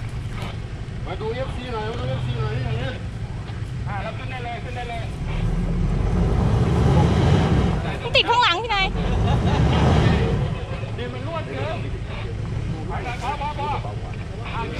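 Toyota Fortuner SUV engine working in a deep dirt rut, revving harder for several seconds in the middle as it strains to climb out, with people's voices calling over it.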